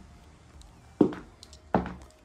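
Two brief, clipped voice sounds, one about a second in and another near the end, each short and sudden, against a faint room background.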